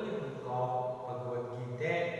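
A man's voice chanting in a sing-song way, holding each pitch for about half a second before moving to the next.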